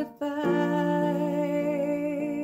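Electric keyboard playing sustained chords, with a woman humming a wavering melody over them. The sound dips briefly just after the start, and a new chord comes in about half a second in.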